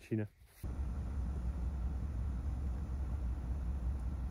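A voice trails off at the very start, then after a brief hush a steady low rumble with a faint hiss begins and runs on unchanged.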